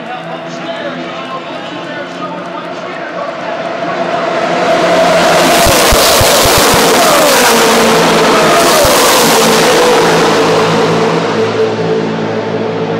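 A pack of NASCAR Camping World Truck Series race trucks' V8 engines at full throttle on a restart, growing louder over about four seconds and then passing very loudly, several engine notes dropping in pitch as the trucks go by. The sound fades near the end.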